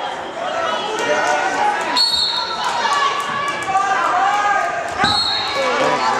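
Spectators and coaches shouting in a gym hall during a wrestling bout, with thumps on the mat and two short high squeaks, about two seconds in and near the end.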